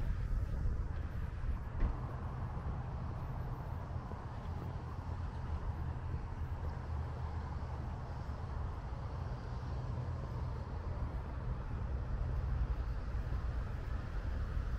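Steady outdoor background noise: an even low rumble with a lighter hiss over it, and one brief knock about two seconds in.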